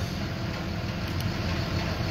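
A motor vehicle engine idling, a steady low rumble.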